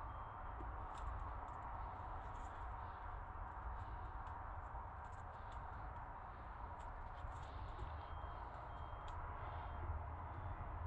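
Faint scrapes and light clicks of a gelcoat-laden brush being wiped against the inside wall of a bucket, over a steady low background hum.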